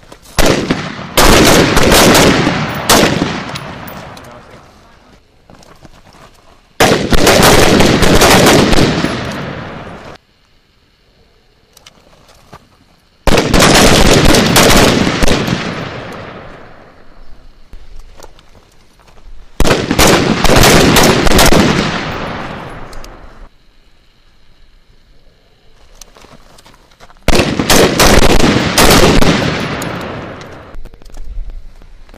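Machine gun firing five long bursts of automatic fire, each about two to three seconds long and trailing off before the next.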